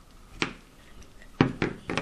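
A screwdriver being handled against a small steel channel bracket and the tabletop while the wrong screwdriver is set aside: about four sharp clicks and knocks, the loudest about a second and a half in.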